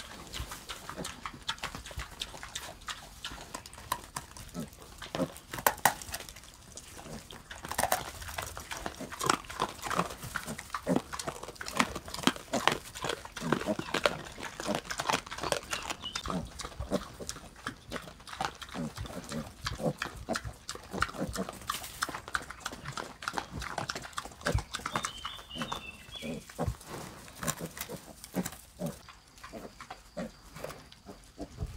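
Piglets and a sow grunting while they root and feed, with many short, sharp clicks and crunches from their snouts and chewing.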